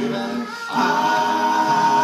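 Male a cappella vocal group singing, with a brief dip about half a second in, then a held chord.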